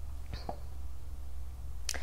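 A paperback book being picked up and handled: a couple of faint taps about half a second in and one sharp click near the end, over a low steady hum.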